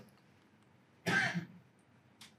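A man clearing his throat once, briefly, about a second in, between stretches of near silence.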